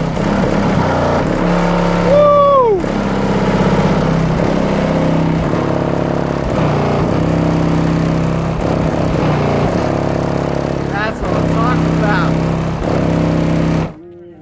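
Loud bass-heavy music played through a car-audio system of four 18-inch subwoofers, heard from outside the vehicle, its deep bass notes changing about once a second. A voice slides down in pitch about two seconds in.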